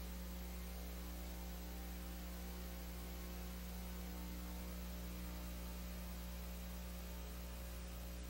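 Steady low electrical hum with an even hiss under it, from the silent audio track of a transferred VHS tape. No music or voice is heard.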